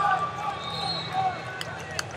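Busy indoor wrestling-arena ambience: many short, overlapping squeaks of wrestling shoes on the mats over the chatter of a crowd, with a couple of sharp knocks near the end.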